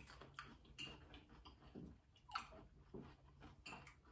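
Faint chewing and mouth sounds of people eating Kool-Aid pickle pieces, with a few short soft clicks and smacks scattered through.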